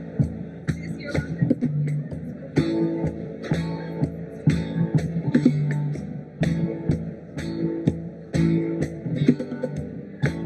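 Live band playing: an electric bass guitar and guitar over hand percussion, with a sharp hit about once a second keeping a steady beat.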